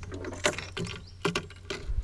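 Fishing tackle being handled: a handful of irregular clicks and light mechanical rattles, over a steady low hum.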